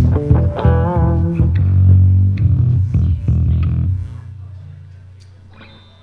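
Electric bass and guitar noodling on stage between songs: a run of low plucked bass notes with a wavering guitar note about a second in, dying away after about four seconds.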